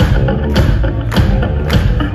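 Live rock band playing through a concert PA system: electric guitars and bass over a steady drum beat of about two hits a second, with no vocals yet.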